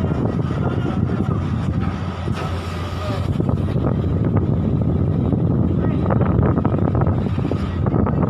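Ferry's engines running with a steady low rumble, heard from the open deck.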